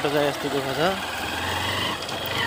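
Motorcycle engine running steadily at low speed on a rough dirt track, a low hum under a man talking in the first second.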